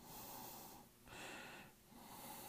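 Near silence with faint breathing close to the microphone: two slow breaths about a second apart.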